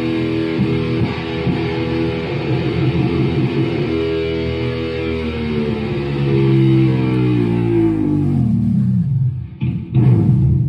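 Electric guitar playing loud held notes. Drums play along for the first few seconds and then drop out, leaving the guitar alone. The notes step downward near the end, and a last loud strum hits right at the close.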